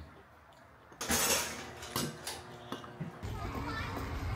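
Children's voices at a table, with a few light clinks of spoons against cereal bowls. About three seconds in, a steady low outdoor rumble begins, typical of wind on the microphone.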